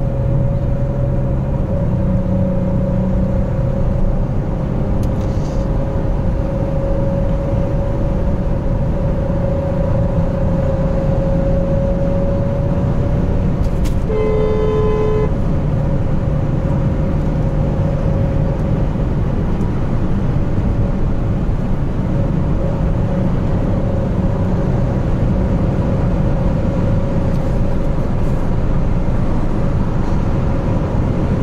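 Peugeot 407's ES9A 3.0 V6 engine and road noise heard from inside the cabin while cruising on a highway, a steady drone. About halfway through, a car horn sounds once for about a second.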